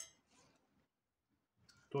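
Faint handling of a syringe and a disposable needle as the needle is fitted: a sharp click at the start, then a few soft plastic sounds.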